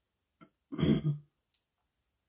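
A woman clearing her throat once, about a second in, a short rough rasp in two quick pushes.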